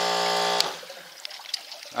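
A steady electric hum cuts off with a click about half a second in. After it, water from a hose trickles and splashes into a miller table's water tub.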